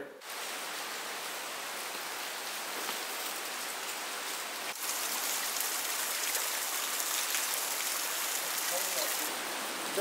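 Steady rush of water from a small waterfall running down a rock face, with a brief break about halfway and a brighter hiss after it.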